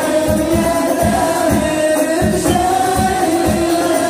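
Singing in long held notes over a steady, evenly repeated drum beat, in the manner of Islamic devotional song.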